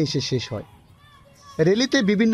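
A voice speaking, breaking off about half a second in. Faint voices are heard in the pause, and the speaking starts again near the end.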